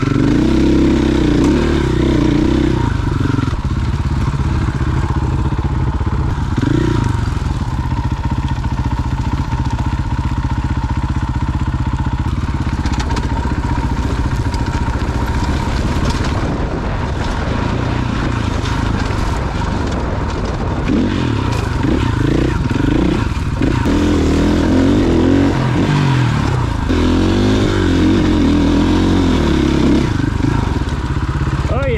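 KTM dirt bike engine running under the rider over rocky ground. It is steadier and lower through the middle stretch, then revs up and down repeatedly in the last third.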